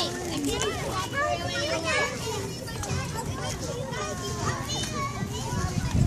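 Young children's voices, several at once, chattering and calling out as they play on a playground.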